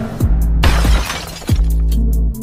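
Electronic intro music with two deep bass drops that sweep down in pitch, about a second and a half apart. A shattering crash like breaking glass comes about half a second in.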